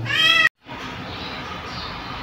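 A cat meows once, a short high call of about half a second that is cut off abruptly, followed by a steady low background noise.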